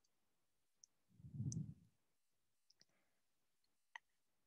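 Near silence with a few faint clicks, and a soft low sound of about half a second about one and a half seconds in.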